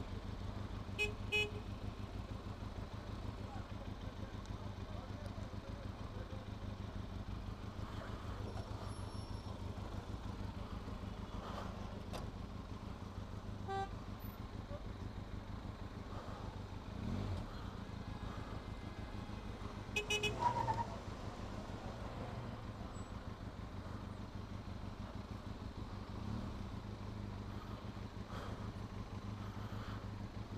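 Benelli TRK 502X's 500 cc parallel-twin engine idling steadily in stopped traffic. Short vehicle horn toots about a second in and, louder, about two-thirds of the way through.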